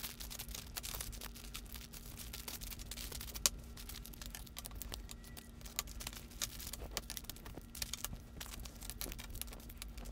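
Plastic packaging being handled and set down on a stone countertop: bagged wax melts and clamshell wax-melt packs rustling and clicking in many light, irregular taps, with one sharper click about three and a half seconds in. A faint steady hum runs underneath.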